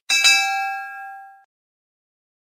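A notification-bell sound effect: one bright ding that rings out and fades away within about a second and a half.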